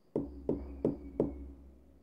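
Four evenly spaced finger knocks, about three a second, on a small loudspeaker that serves as the knock sensor of an Arduino secret-knock lock. They tap out the stored secret knock that switches the appliance on.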